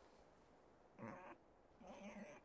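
Two short, faint cries from an injured pig, the second a little longer and reaching near the end.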